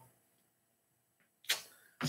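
Near silence in a small room, then one short, quick intake of breath about a second and a half in, just before the man speaks again.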